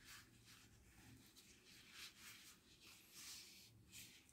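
Near silence with a few faint, soft rustles of hands folding and handling a crocheted yarn bootie.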